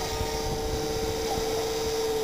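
Electric T-Rex 500 RC helicopter flying overhead: its motor and rotor head give a steady whine at one even pitch, over an uneven low rumbling noise.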